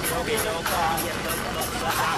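Indistinct voices of several people talking over steady outdoor background noise.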